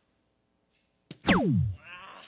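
A soft-tip dart strikes an electronic DARTSLIVE board about a second in with a sharp click. The board answers at once with its short hit sound, a tone gliding steeply downward, registering a single 5.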